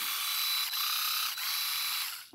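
Vitek VT-2216 electric manicure device running unloaded with its polishing attachment fitted: a steady high-pitched whine with a thin high tone.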